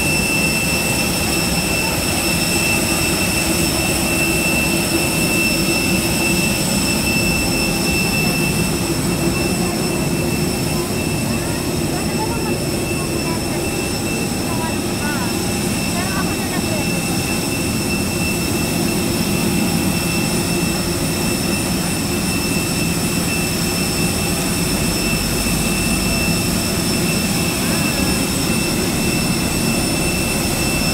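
Steady jet-aircraft whine over a low rumble on an airport apron: several constant high tones that do not change in pitch. Faint voices pass through around the middle.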